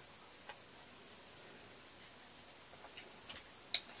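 A few faint clicks and taps as a cardstock paper doll is handled over a work mat: one tick about half a second in, a small cluster around three seconds, and a sharper click just before the end.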